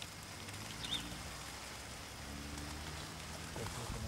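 Quiet outdoor field ambience: a low, steady background hiss with a faint low hum, and a brief faint high chirp about a second in.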